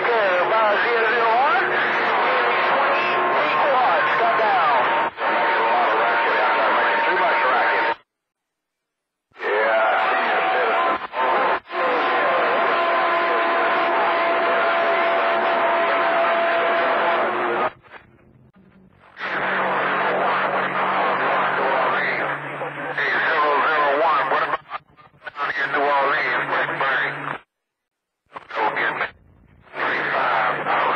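CB radio receiving AM skip on channel 28: garbled, overlapping distant voices under static, with steady whistling tones from heterodyning carriers. The squelch cuts the audio off completely about 8 seconds in, briefly again around 18 seconds, and near the end.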